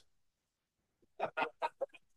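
A person laughing briefly, a few quick separate 'ha' bursts starting about a second in, after a second of near silence.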